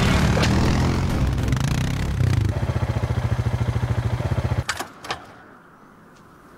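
A KTM RC sport motorcycle's single-cylinder engine runs, settles into an evenly pulsing idle, then stops abruptly a little before the end. Two sharp clicks follow.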